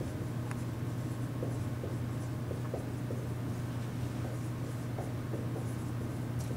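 Dry-erase marker writing on a whiteboard: faint short strokes and taps scattered through, over a steady low hum in the room.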